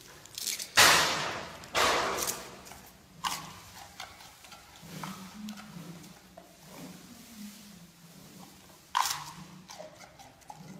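Giant panda biting and crunching fresh bamboo shoots: loud sharp cracks about a second in and again a second later, quieter crunching and chewing after, and another crack near the end.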